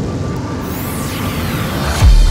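Cinematic logo-reveal sound effect: a rushing swell over a deep rumble, with whooshes gliding up and down across it as it builds.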